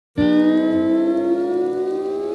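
Sustained electronic tone with many overtones that starts suddenly and glides slowly upward in pitch: a siren-like intro riser sound effect.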